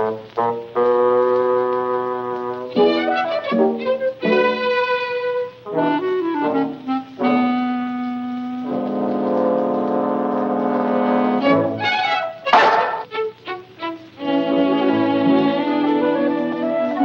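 Orchestral film score with brass to the fore: short clipped phrases alternating with held chords, and one brief noisy burst about three-quarters of the way through.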